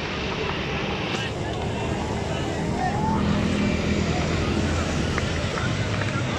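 Steady outdoor din of a busy city ground: a low traffic and engine hum under faint scattered shouts of players.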